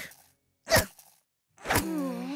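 A pickaxe striking a hard wall twice, about a second apart, each blow a sharp crunching knock.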